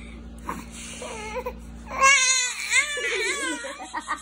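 A baby vocalising: soft short coos about a second in, then a loud, high-pitched wavering call of a second and a half starting about two seconds in.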